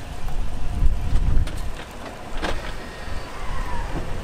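Chevrolet Silverado pickup truck driving slowly past, a low steady rumble with wind buffeting the microphone. One sharp knock about two and a half seconds in.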